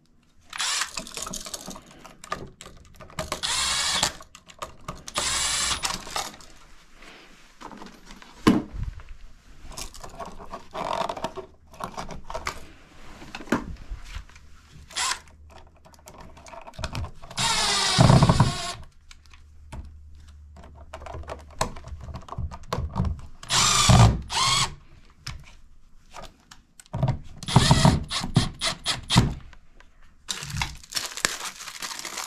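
Red Milwaukee cordless driver running in several short spurts as it drives the mounting screws of a replacement receptacle into the outlet box, with handling clicks between spurts. The longest and loudest spurt comes a little past halfway.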